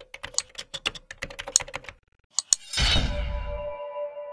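Computer keyboard typing: a fast run of key clicks for about two seconds, then two more clicks. Near the end comes a whoosh into a held musical tone as the intro music begins.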